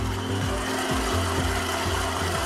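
Stand mixer motor running steadily on low speed, mixing powdered sugar and cocoa into the almond-paste amaretti dough.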